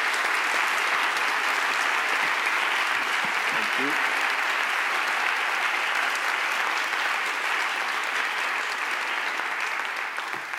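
Large audience applauding, a dense, steady clapping that eases off slightly near the end.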